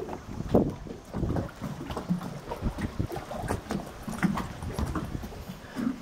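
Irregular low thuds and knocks of footsteps on a fibreglass boat deck, with wind on the microphone.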